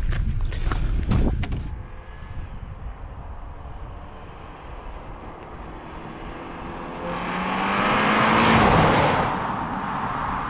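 2019 Audi A5 Sportback with its 2.0-litre four-cylinder driving past, engine note and tyre noise building from about seven seconds in, loudest near nine seconds, the pitch dropping as it goes by and then fading. A few short knocks come in the first second and a half.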